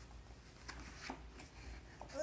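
Faint rustling of a thick paperback's pages being flipped and the book closed, with a few soft paper taps.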